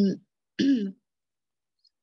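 A reader's voice: the end of one word, then one short voiced sound about half a second in, then a pause.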